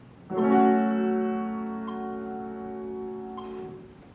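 Piano chords sounding the key of F-sharp minor. A sustained chord is struck shortly in and dies away slowly, with two further strikes around two and three and a half seconds in, fading out near the end.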